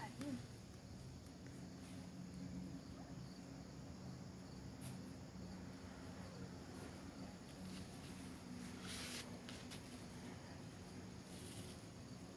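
Faint outdoor summer ambience with insects, likely crickets, chirping under a steady low hum, with a brief hiss about nine seconds in.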